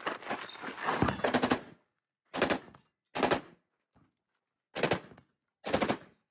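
KP-15 select-fire AR-15-pattern machine gun firing full auto. A rapid string of shots runs for about the first second and a half, then four short bursts follow.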